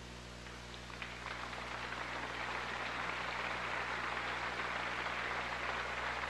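Audience applauding, building up about a second in and then holding steady.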